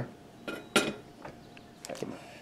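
A few light metallic clinks of small hand tools being handled, the sharpest about three quarters of a second in.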